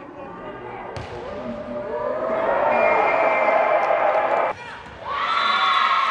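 A volleyball struck hard once about a second in, then players and spectators shouting and cheering in an echoing sports hall, the voices cutting off suddenly for a moment about four and a half seconds in before resuming.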